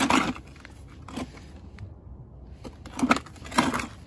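Handling noise from a bulky plastic jump-starter unit being turned around on gravel: four short crunching knocks and scrapes, one right at the start, one about a second in and two close together near the end.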